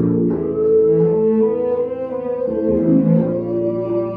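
A band playing a slow instrumental passage, led by long bowed cello notes over electric bass and keyboard.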